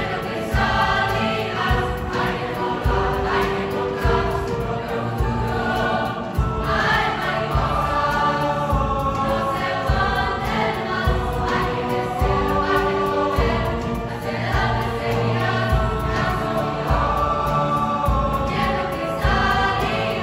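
Mixed choir of teenage voices singing with accompaniment, over a steady low beat.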